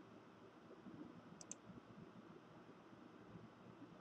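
Near silence with faint room tone, broken by two quick, faint computer mouse clicks about a second and a half in.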